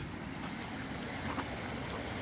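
Steady rush of muddy floodwater flowing down a ditch, where a garden hose from a water pump is discharging the pumped water, with a low steady hum underneath.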